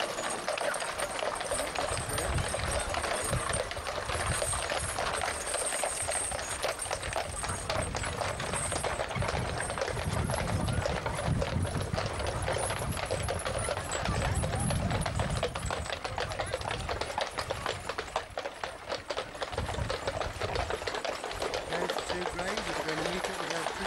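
Hooves of pairs of heavy Shire horses clip-clopping on a paved road as they walk past pulling show wagons, a steady run of overlapping hoof strikes. A low rumble comes and goes underneath.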